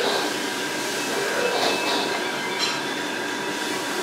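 Steady mechanical drone of a small restaurant's background, a constant hum with a few faint distant voices and clinks in the middle.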